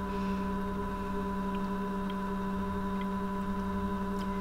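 A steady, even hum made of several sustained tones, with a few faint ticks.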